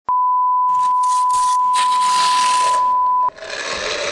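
Steady 1 kHz line-up test tone of the kind that accompanies colour bars, starting just after the beginning and cutting off suddenly after about three seconds. A hissing noise comes in under it before the first second and carries on after the tone stops.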